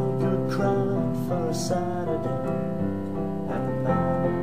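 Piano playing, with sustained chords in the left hand and a melody line in the right.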